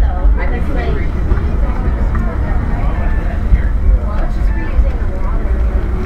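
Steady low rumble of a moving vehicle heard from inside, with indistinct voices talking over it.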